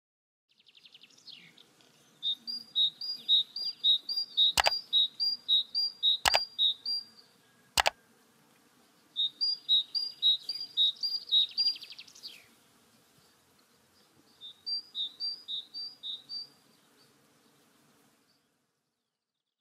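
A small bird chirping in quick repeated high two-note calls, about three a second, in three bouts with short pauses between them. Three sharp clicks sound during the first bout.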